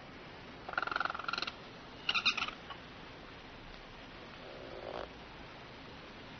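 Small owl giving two short, rapid trilling calls while its head is stroked, followed by a softer, lower one near the end.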